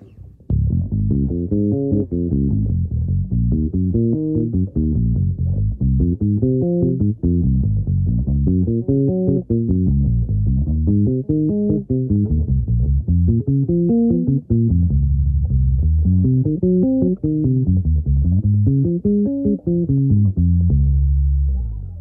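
Five-string electric bass playing the diatonic arpeggios of D-flat major in two octaves, one chord after another without a break: a quick, even stream of plucked notes running up and back down, with a longer held low note near the end.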